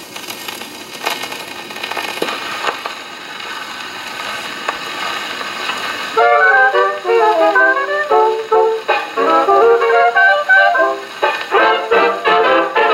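A 1929 78 rpm shellac record played acoustically on an RCA Victor 2-65 portable Orthophonic Victrola. For about six seconds there is only needle hiss and crackle from the groove. Then the dance band's brass-led music starts, with a slight warble that the owner puts down to the turntable screw cap dragging on the spring motor.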